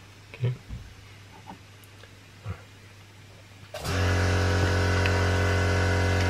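A steady machine hum, low with many overtones, switches on abruptly about four seconds in and holds at an even level.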